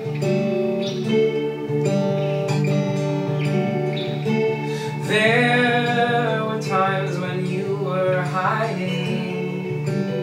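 Acoustic guitar picking a steady pattern alongside a Telecaster-style electric guitar through a small amp, in an instrumental break between sung lines. About halfway through, a higher melodic line with bending, wavering notes comes in over the picking.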